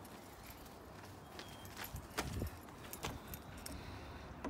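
A few faint, irregular clicks and knocks, with the sharpest two about halfway through and near the end.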